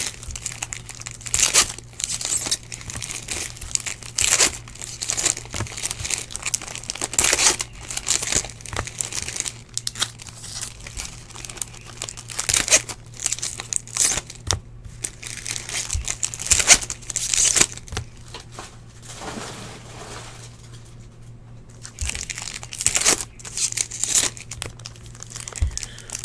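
Foil trading-card pack wrappers being torn open and crinkled in irregular bursts, with cards handled between them.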